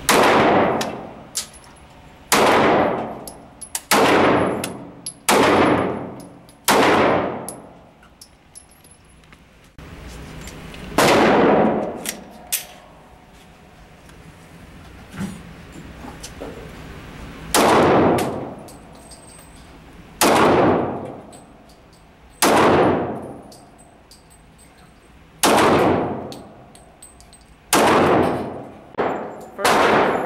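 Single pistol shots at an indoor range, each a sharp crack that rings away over about a second in the concrete lane's echo. About five shots from a Smith & Wesson M&P Shield come first, then, after a cut, about six from a Wheaton Arms custom Glock, spaced one to three seconds apart.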